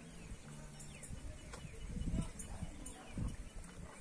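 A cow walking up over grass and dry leaves: a few dull thuds of its hooves, about two seconds in and again a second later.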